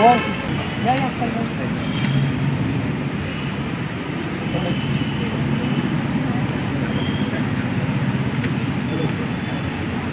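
Indistinct chatter of several people standing close together, with one voice briefly louder at the start, over a steady background rumble.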